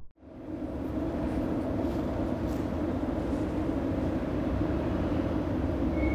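Steady outdoor road-traffic noise: a low rumble with a constant engine hum, fading in after a moment of silence.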